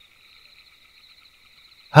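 A faint, steady high-pitched chirring in the background, like a night chorus of insects, and nothing else until a voice resumes narrating near the end.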